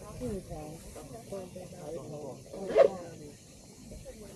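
Quiet, overlapping voices of several people murmuring and making soft vocal sounds, with one louder short voice about three seconds in, over a faint steady hiss.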